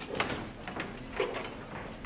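A few faint knocks and handling sounds as microscope power plugs are pulled from the lab-bench outlets.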